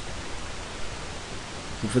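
Steady background hiss of a voice recording in a pause between words, with the narrator's speech starting at the very end.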